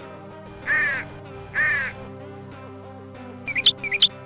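A crow cawing twice, each caw loud and harsh, over steady background music. A couple of short, sharp high-pitched sounds come near the end.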